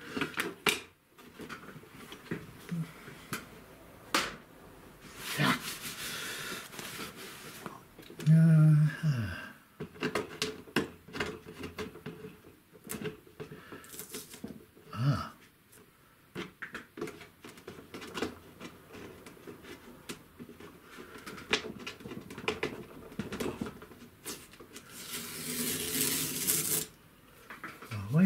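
Painting gear being cleared from a wooden worktable: scattered knocks and clicks of a palette, bulldog clips and brushes being picked up and put down, with longer scraping or rustling noises about five seconds in and near the end. A brief low vocal murmur about eight seconds in.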